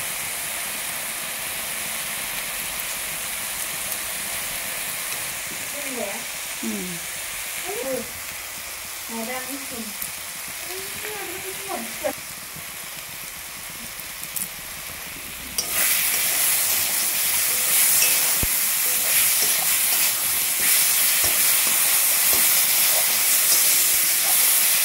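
Spice masala paste frying in oil in an aluminium kadai, a steady sizzle that grows suddenly louder about two-thirds of the way in.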